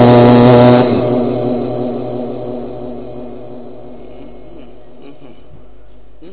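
A male Quran reciter's long held note through a loudspeaker system, cutting off about a second in. Its echo effect repeats and fades away over the next few seconds, leaving a faint steady hum.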